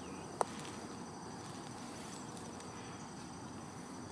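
Faint, steady insect chirring in the background, with one sharp click about half a second in.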